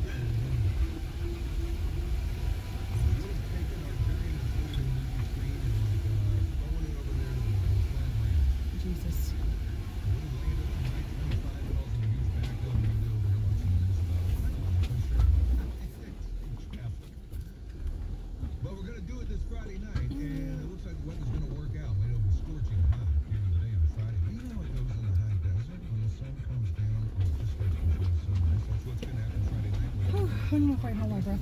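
Jeep Gladiator crawling slowly over a rocky shelf road, heard from inside the cab: a low, uneven rumble of engine and drivetrain that eases briefly just past halfway.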